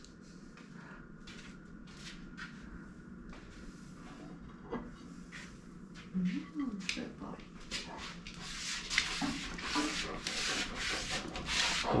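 Rubbing and rustling close to the microphone with scattered light clicks, faint at first and growing louder over the last few seconds.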